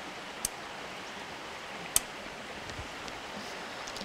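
Steady outdoor background hiss, an even rushing like distant running water, with two brief sharp clicks, one about half a second in and one about two seconds in.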